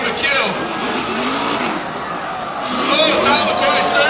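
Drift cars' engines revving up and down as they run a tandem at a race track, with a dense wash of tyre and crowd noise.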